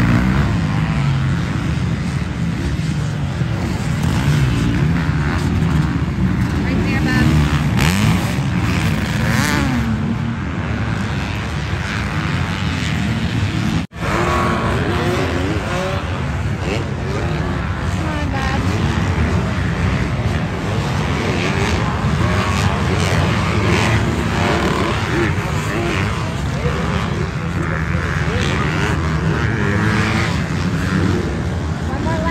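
Several motocross dirt bikes racing around the track, their engines revving up and down as the riders accelerate and back off for corners and jumps, with voices in the background.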